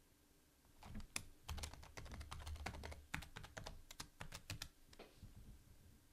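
Faint typing on a computer keyboard: a quick run of about twenty keystrokes starting about a second in and stopping about five seconds in.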